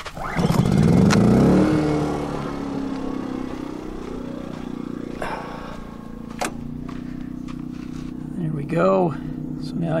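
Portable gasoline generator starting up: the engine catches, revs up for a second or so, then settles into a steady run.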